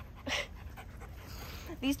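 Dog panting near the microphone, with a short breathy puff about a third of a second in.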